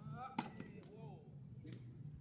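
A tennis racket striking the ball once, a sharp pop about half a second in, during groundstroke practice on a grass court; voices talk in the background.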